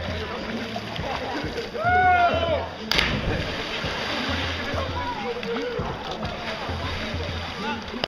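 A person jumping from a rock ledge into a pool: a loud yell as they fall, then the sharp splash of hitting the water about three seconds in, with spray washing down afterwards. Voices of onlookers chatter throughout.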